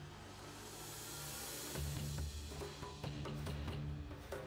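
Background music: a swell that builds, then about two seconds in a driving beat of drum hits over low bass notes.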